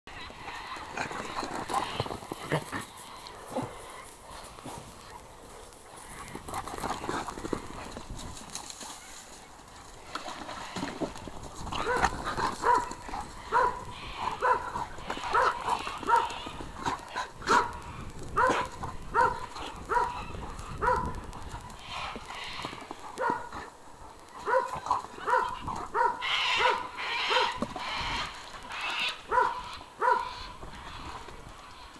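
Two retrievers, a curly coated retriever–labrador cross and a Murray River curly coated retriever, playing rough. At first there is only scuffling. From about twelve seconds in come short, repeated play barks, about two a second.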